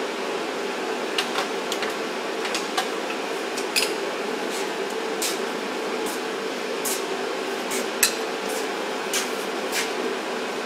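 Steady background hum in a workshop, with about a dozen sharp, irregular metallic clicks and clinks of small parts and hand tools being handled. The loudest click comes about eight seconds in.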